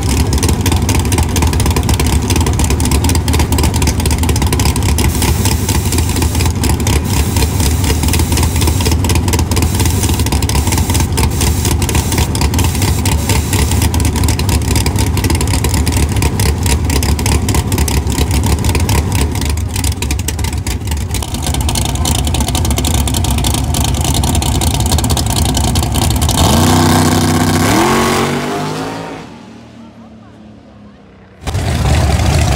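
Fox-body Mustang drag car's engine running loud and steady at idle. About three and a half seconds before the end it launches, its pitch rising quickly as it pulls away and fades.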